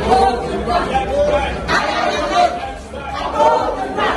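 Many voices talking at once: a crowd of students chattering.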